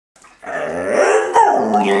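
A dog making one long, talk-like howling vocalization that starts about half a second in and bends in pitch partway through, heard by its owner as the dog saying "Hello mom".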